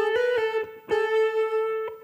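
Electric guitar playing a short single-note melody phrase: a few quick notes, then one note held and ringing for about a second.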